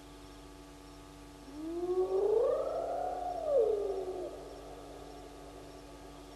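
One long call from an animal, about three seconds, rising in pitch, holding, then sliding back down, over a faint steady hum.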